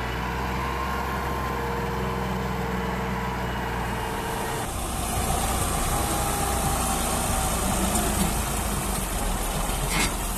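Vehicle engines running steadily, with an abrupt change about halfway in. The second is a Massey Ferguson 260 tractor's diesel engine working under load as it pulls a heavily loaded trolley.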